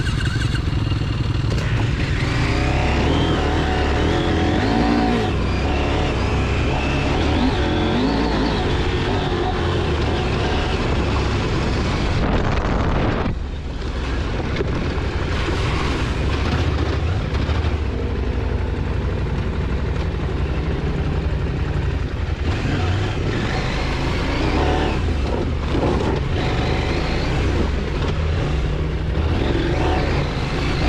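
Off-road motorcycle engines running along a dirt trail, recorded by on-bike or helmet cameras in short clips. The sound changes abruptly about halfway through as one clip gives way to another.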